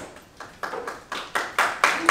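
Hand claps from a small group starting up, a few separate claps that come faster and louder and build into applause.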